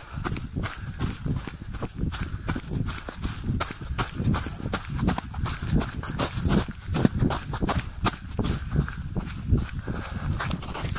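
Running footsteps crunching through a thin layer of fresh snow in a quick, even rhythm, over a low rumble.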